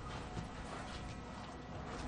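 Low background hubbub of an outdoor gathering, faint and steady, with a small click about half a second in and no distinct event.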